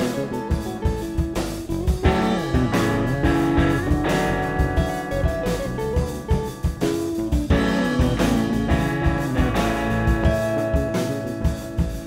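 Live alt-rock band with jazz leanings playing an instrumental passage: electric guitars and bass over a drum kit, with no singing.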